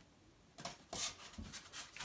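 A few light knocks and scrapes, starting about half a second in, as a small decorative plaque is set and balanced on top of a mirror frame.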